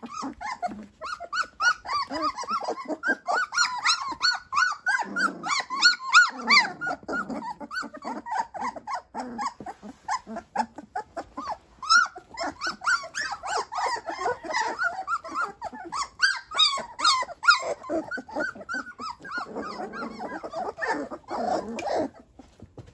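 A litter of young standard poodle puppies vocalizing as they wrestle and mouth each other: a near-continuous stream of short, high-pitched yips and squeaks from several pups at once.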